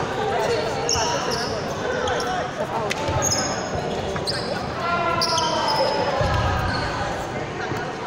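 Players' voices echoing in an indoor basketball hall, with three short high squeaks of sneakers on the hardwood floor about 1, 3 and 5 seconds in.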